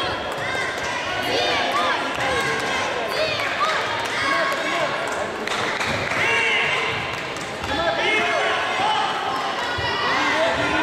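Several voices shouting and calling over one another, as at a youth taekwondo bout, with occasional dull thuds from feet or kicks on the mats and body protectors.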